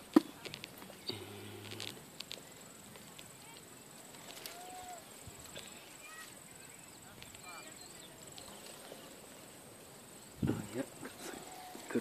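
Quiet outdoor picking sounds: a sharp handling click just after the start, faint rustling of blueberry branches being handled, and a few faint high chirps. Low murmured voices come in near the end.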